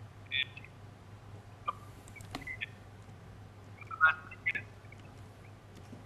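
Broken-up audio from a Skype video call. The remote speaker's voice gets through only as a few short, chirpy fragments over a low steady hum: the sound link is failing.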